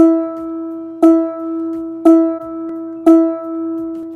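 Sampled balalaika E4 string played by a tuner app on repeat: the same plucked reference note for tuning that string, sounding four times about once a second, each one ringing and fading before the next.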